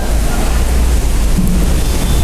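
Steady, loud low rumble with a hiss over it, running without a break.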